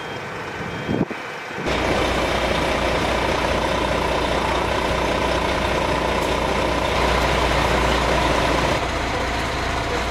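Fire engine's diesel engine running steadily, a loud even drone with a low rumble and a faint held tone. It sets in after a quieter opening second and a half, which has a single sharp click about a second in.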